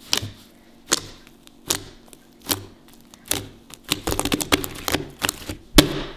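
Fluffy slime clicking and popping as fingers poke and press into it: single sharp clicks about once a second at first, then a rapid run of clicks in the last two seconds. It is very clicky slime.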